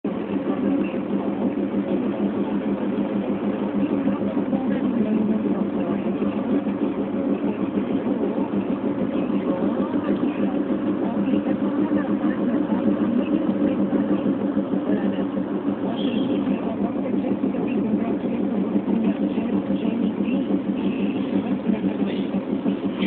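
Steady engine and road noise heard inside the cabin of a moving car, an even drone that holds level throughout.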